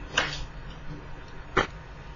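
Quiet pause: faint steady background hiss, with a short soft noise just after the start and a brief click about one and a half seconds in.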